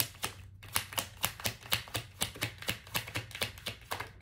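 Tarot cards being shuffled by hand to draw a clarifier card: a rapid, uneven run of sharp card clicks, several a second.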